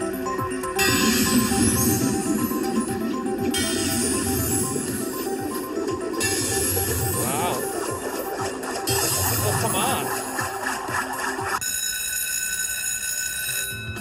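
IGT Megabucks Emerald Sevens slot machine playing its electronic reel-spin music with repeated rising sweeps as Progressive symbols land reel by reel. In the last couple of seconds it changes to a steady chiming win jingle for a Major Bucks progressive.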